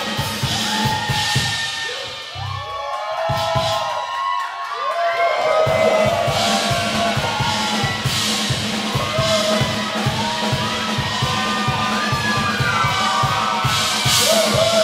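Live blues band playing: the drums drop out briefly about two seconds in while a lead line bends and slides on its own, then the full band with drum kit comes back in on a steady beat.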